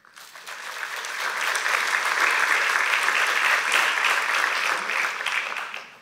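Audience applauding, swelling over the first two seconds, holding steady, then dying away near the end.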